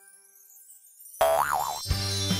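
Near silence for about a second, then a cartoon 'boing'-style sound effect that wobbles up and down in pitch twice over a high shimmering sparkle. It is a reveal flourish for the finished hairstyle.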